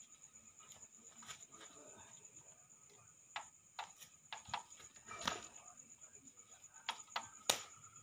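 Sharp, irregular slaps and stamps from a kuntau martial-arts routine, about eight of them in the second half, over a steady high-pitched pulsing trill of insects.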